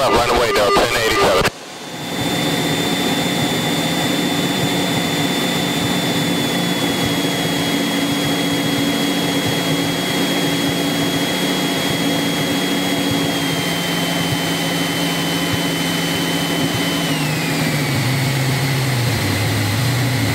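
Light single-engine propeller aircraft's engine running steadily during the landing rollout. Its pitch steps down about a third of the way in and again about two-thirds in, then drops more steeply near the end as power comes off and the plane slows.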